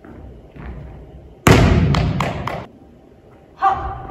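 A quick run of about four sharp thuds starting about a second and a half in, echoing in a large hall: a volleyball player's spike-approach steps and take-off on a wooden gym floor. A shorter sharp sound follows near the end.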